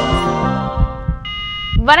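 TV show theme music ending under low heartbeat-like thumps, which fade out over the first second. A short electronic beep is held for about half a second, and a woman's voice starts right at the end.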